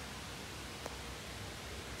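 Faint steady background hiss of outdoor ambience, with one small click a little under a second in.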